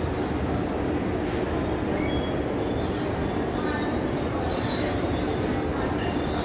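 Escalator running steadily while being ridden, a continuous mechanical noise from its moving steps and drive with no break.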